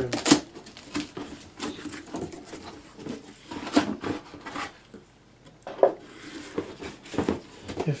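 Cardboard box handled by hand: the top flap of the box opened and folded back, with scattered knocks and scrapes of cardboard.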